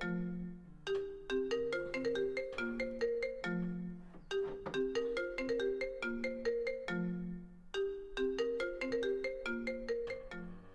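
Smartphone ringing with a marimba-like melodic ringtone, a run of short struck notes that repeats in phrases about every three and a half seconds.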